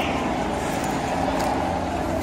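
Outdoor background: a steady noise with faint, distant voices.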